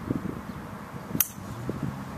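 Golf driver striking a ball off the tee: one sharp crack about a second in.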